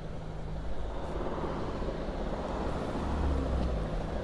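Street traffic noise: a motor vehicle passing, its low rumble building to a peak about three seconds in.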